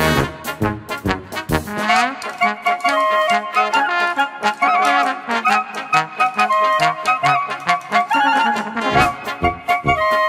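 Brass band playing an instrumental polka. A strong oom-pah bass mostly drops out about two seconds in, leaving a higher wind melody with trills and light accompaniment, and the low beat comes back near the end.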